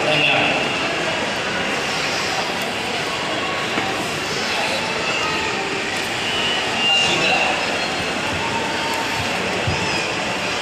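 Indistinct voices over a steady hubbub, echoing in a large indoor hall.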